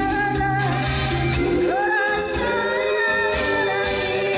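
A woman singing a song live into a handheld microphone over instrumental accompaniment. She holds long notes and slides up into a new held note about halfway through.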